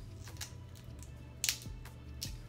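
Snow crab shell cracking and snapping under the fingers: a crisp crackle about a third of a second in and a louder, sharper one past the middle.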